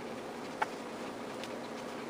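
Small hardwood squares being handled and set into a glued grid: one sharp wooden click with a brief ring about half a second in, then a few faint ticks, over a steady low hum and hiss.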